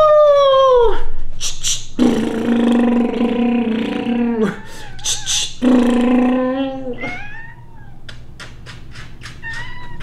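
Domestic cat meowing: a short meow that rises and falls in pitch, then two long, low, drawn-out yowls, then fainter calls near the end.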